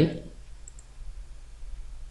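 Two faint computer mouse clicks about three-quarters of a second in, placing spline points in a CAD sketch, over a low steady background hum.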